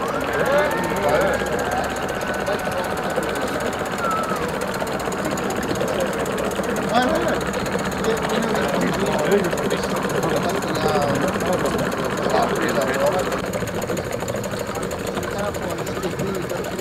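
Small steam engine of a scratch-built model stern-wheel paddle steamer running with a rapid, steady beat as the boat moves, with people talking in the background.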